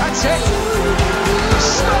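Background music with a steady beat and a lead line that slides up and down in pitch.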